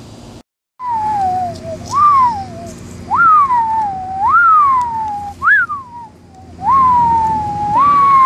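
Eerie whistled UFO sound effect: a single tone swooping up quickly and sliding slowly back down, over and over about once a second, after a brief dropout near the start.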